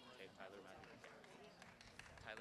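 Near silence, with faint voices in the background.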